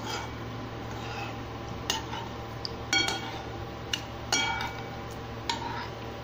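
A metal utensil clinking against the rim of a pot about five times, roughly a second apart, each clink ringing briefly, as pieces of lamb brain are turned in a wet marinade.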